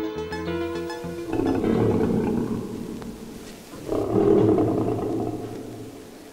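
A lion roaring twice, each roar swelling and dying away over about two seconds, the first about a second in and the second about four seconds in. The last chord of background music fades out under the first roar.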